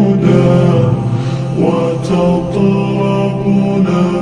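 An Arabic nasheed sung by male voices: long held notes over a steady low drone.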